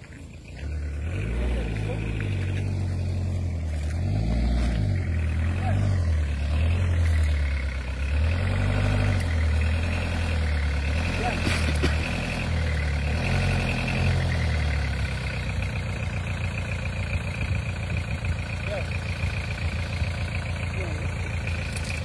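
Pickup truck engine running under load, its low note rising and falling over and over as it is revved, then settling to a steadier, lower-revving run for the last several seconds.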